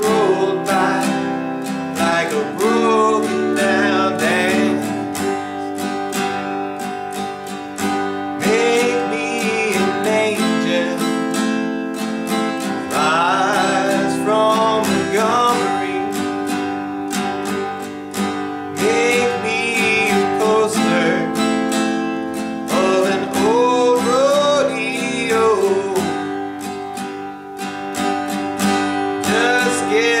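Acoustic guitar strummed steadily in a down, down-up, up-down-up pattern through G, C, F and D chords, with a man singing over it in phrases.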